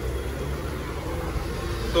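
Steady low background rumble of road traffic, with no distinct event standing out.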